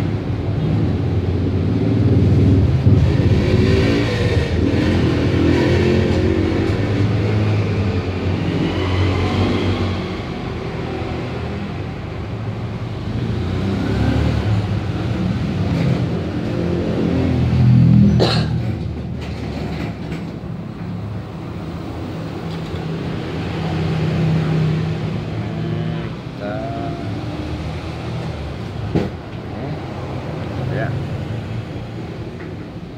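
Road traffic: vehicle engines running past continuously, swelling and fading in turn, loudest about eighteen seconds in.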